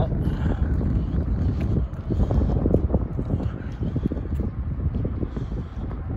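Strong wind buffeting the camera's microphone: a loud, gusty, irregular rumble.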